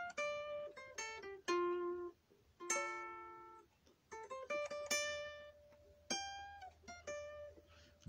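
Guitar picked alone in a blues run of single notes and a few chords, each plucked and left to ring. There are two short pauses, about two seconds in and again about four seconds in.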